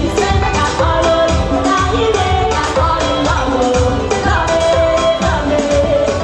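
Live band playing loud music, with drums keeping a steady beat and keyboard, while a woman sings into a microphone.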